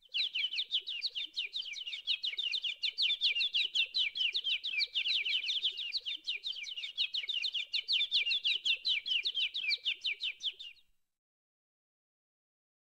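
A bird chirping: a fast, even run of short falling chirps that starts and cuts off abruptly near the end.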